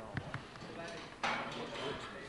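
Indistinct voices, with a couple of short knocks about a quarter-second in and a louder burst of sound starting just past halfway.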